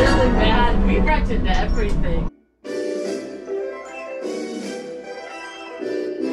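A cockpit flight-simulator ride's soundtrack, with a deep rumble and gliding effects, cut off abruptly about two seconds in. Theme-park background music from outdoor loudspeakers follows.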